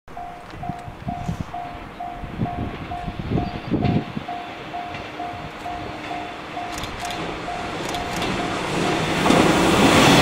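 JR West 115 series electric train approaching, its running noise growing steadily and loudest near the end as it draws close. A short ringing tone repeats about twice a second until shortly before the train arrives.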